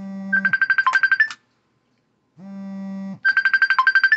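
Phone ringtone sounding twice: each ring is a low buzzing tone of under a second followed by a quick run of high beeps.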